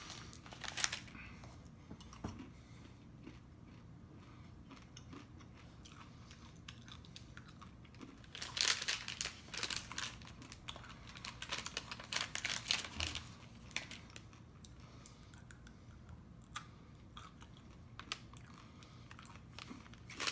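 Chewing and crunching on candy-coated peanut M&Ms, in several bursts of crisp cracks, the loudest near the middle.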